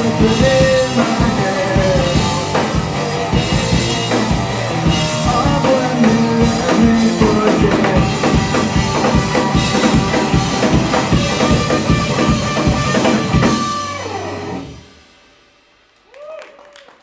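Live rock band of electric guitar through a Vox amp, bass guitar and drum kit playing the last bars of a song. The band stops together about fourteen seconds in and the final chord rings out and fades.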